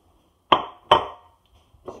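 Two sharp knocks of dishware against a stone kitchen countertop, under half a second apart, each with a short ringing decay.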